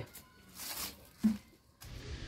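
A brief scrape as a plastic bucket is gripped and moved, heard after one short spoken word.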